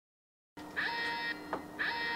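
Electronic alert alarm from a GPS package-tracking system, beeping in a repeating pattern: two half-second pitched beeps about a second apart over a steady low hum, starting about half a second in. It signals that a GPS-rigged bait package has been set off.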